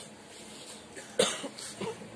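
A man coughing: one sharp cough about a second in, followed by a smaller one near the end.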